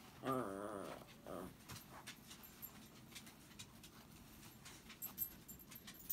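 A dog whining: a wavering whine of about a second at the start, then a shorter, fainter one. Faint ticks of fabric and pins being handled follow.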